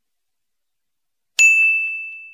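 Silence, then about one and a half seconds in a single bright ding: a bell-like chime sound effect that rings on one high note and slowly fades.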